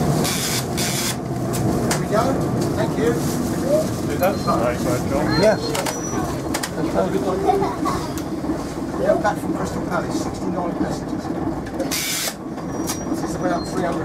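Passengers chatting inside a vintage AEC Regal IV RF single-deck bus, over the steady low drone of the bus's diesel engine and running gear. There is a brief hiss about twelve seconds in.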